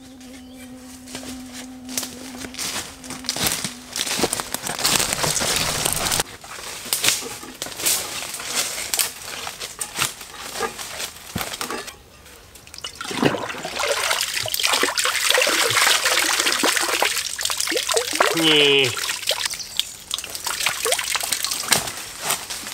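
Water sloshing and trickling as a container is dipped into a woodland pond and filled, in irregular splashes and pours.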